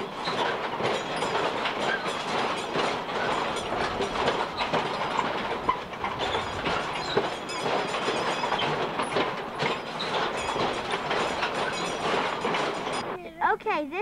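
Kiddie-ride fire engine rattling and clacking as it runs along, with children's voices in the background. The clatter stops suddenly near the end.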